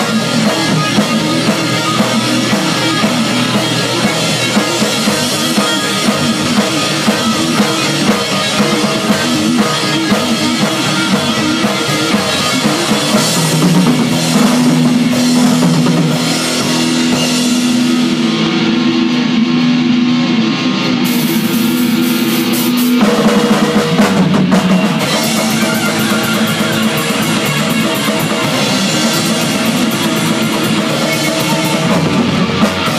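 A thrash metal band playing an instrumental passage live: a drum kit with pounding bass drum and cymbals and heavily distorted electric guitars. Midway the guitars hold long sustained notes while the cymbals briefly drop out, then the full band returns to fast playing.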